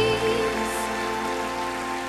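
A young girl's soprano voice ends a held, wavering note about half a second in, and the orchestral backing then holds a soft sustained chord that fades away.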